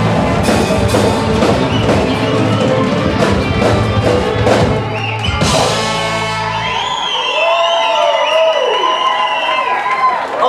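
Live samba-reggae band playing with drums and percussion; the song ends about seven seconds in, and crowd cheering and whooping follows.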